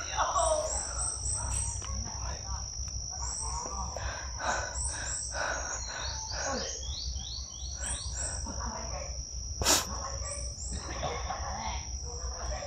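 Forest insects holding one steady high-pitched drone, with runs of short, quick high chirps from birds or insects over it, and a low, quiet voice in between. A single sharp click comes about ten seconds in.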